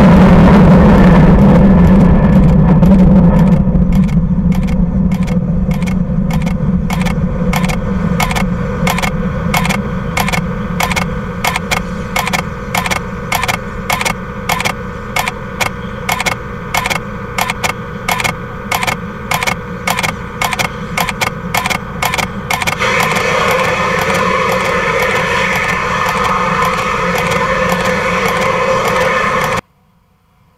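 Delta II rocket launch rumble, very loud at first and fading as the rocket climbs away from the pad. Through the fading rumble runs a regular ticking, two or three a second, that stops about two-thirds of the way through. The sound then cuts off sharply just before the end.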